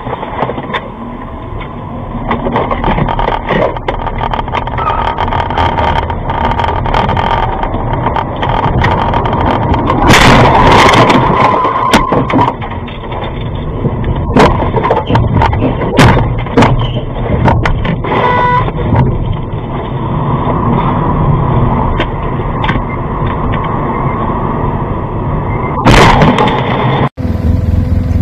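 Car driving noise picked up by a taxi's dashcam, with a run of sharp knocks and bangs as the car leaves the road, loudest about ten seconds in and again near the end. The sound cuts off abruptly just before the end.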